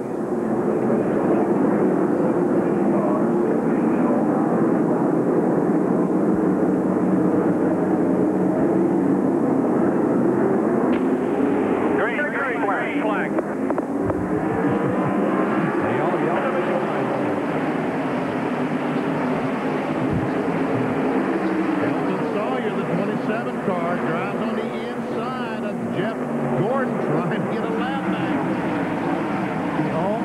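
A field of NASCAR Winston Cup stock cars with V8 engines at full throttle on a restart, many engines running together, their pitch rising and falling as the cars go by.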